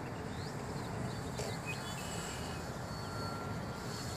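Steady outdoor noise, most likely wind on the microphone, with a faint thin high whine and a few faint short high tones.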